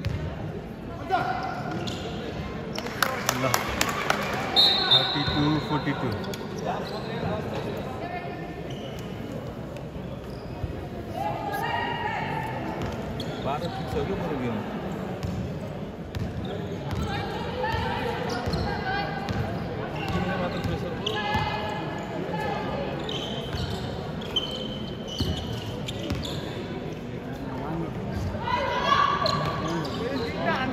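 A basketball bouncing on the court during a game, with a cluster of sharp bounces a few seconds in. Voices call out across a large echoing gym, louder near the end.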